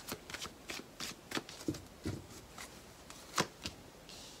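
A deck of tarot cards being shuffled by hand, a series of short, irregular card snaps, the loudest about three and a half seconds in.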